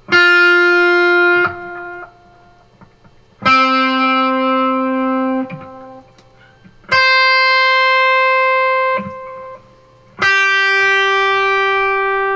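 Electric guitar playing four single pre-bent notes, each string bent up a half step before it is picked so that the note sounds at the bent pitch. The notes come about three seconds apart and each is held steady for about one and a half to two seconds.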